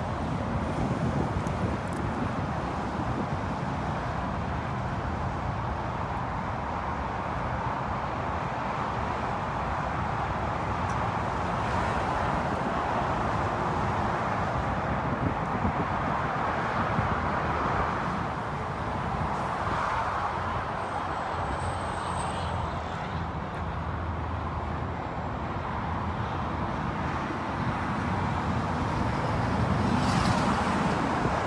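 Steady road traffic, an even rush of tyre and engine noise that swells and eases slightly.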